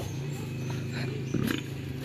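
A small engine running steadily nearby, a low even hum with no change in pitch.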